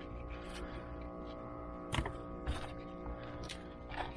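Scrap metal finds and dirt being shifted by a gloved hand in a rubber mat, giving a handful of light clinks and knocks spread over a few seconds.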